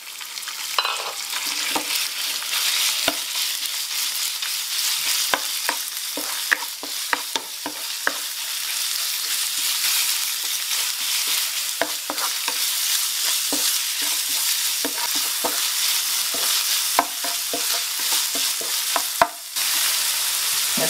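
Minced pork sizzling in hot oil in a nonstick frying pan, with frequent clicks and scrapes of a wooden spoon stirring and breaking it up. The sizzle briefly cuts out near the end.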